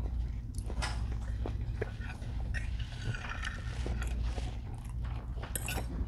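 Knives and forks clicking and scraping on ceramic plates, with chewing, over a steady low room hum.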